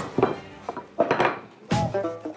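A few separate knocks and clinks of wooden rolling pins and tools on a worktable as clay slabs are rolled out and pressed flat, under background music.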